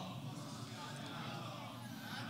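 Faint murmur of several voices over a low steady hum.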